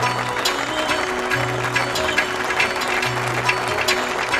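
Music from a live stage show: a band playing with a steady beat of sharp percussion ticks over a repeating bass line.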